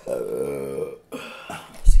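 A person burping once, a drawn-out burp of about a second. A low thump follows near the end.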